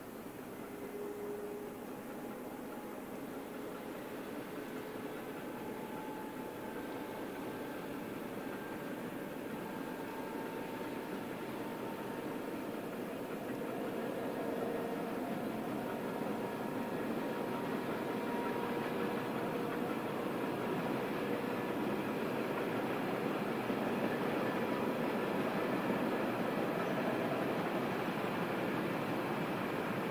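A long freight train rolling by at a distance: the steady rushing rumble of its wagons' wheels on the rails, slowly growing louder toward the end, with faint brief tones coming and going.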